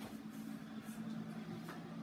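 Quiet room tone with a faint steady low hum.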